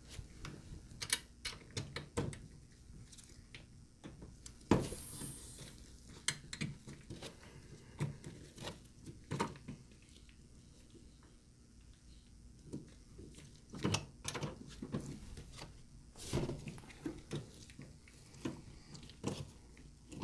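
Small metallic clicks, knocks and scrapes of an Allen key working in the stems of a ductless mini-split's service valves as they are turned open. A brief hiss comes about five seconds in.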